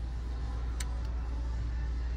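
Steady low hum of a shop's background noise, with a faint brief click about halfway through.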